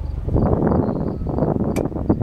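Kohler 10 kW generator set's water-cooled Ford four-cylinder engine being switched off: its steady hum breaks up into an uneven chuffing as it runs down, with a sharp click near the end.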